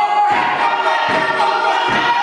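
Men and women performing a Māori haka, chanting and shouting together in unison, with regular stamps of the feet about every three quarters of a second.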